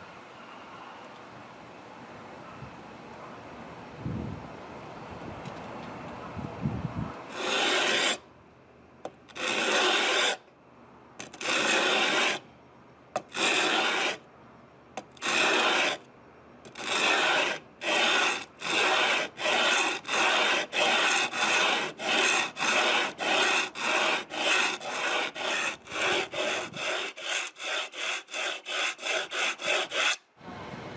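A sandpaper-wrapped wooden block rubbed back and forth by hand over a Gibson Les Paul's wooden headstock. After a quiet start, the strokes come slow and separate about a quarter of the way in, then grow shorter and quicker, to about a stroke and a half a second by the end.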